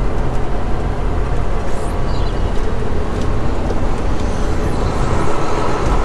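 Semi truck's diesel engine running as the truck moves slowly, heard from inside the cab: a steady, deep engine sound.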